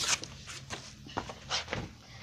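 Footsteps and shuffling on the floor close by: a handful of short knocks and scuffs.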